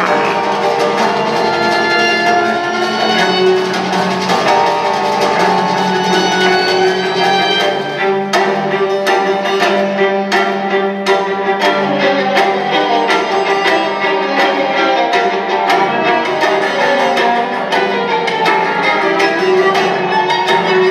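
Orchestral horror film score led by bowed strings, violins and cellos, played back over a room's speakers with no sound effects. About eight seconds in, a run of sharp clicks joins the strings.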